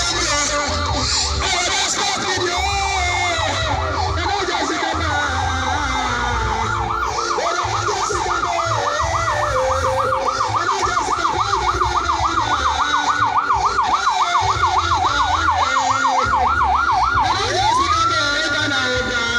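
Electronic vehicle siren, going into a rapid up-and-down yelp of about four cycles a second from about a third of the way in. Near the end it glides up into a steady high tone.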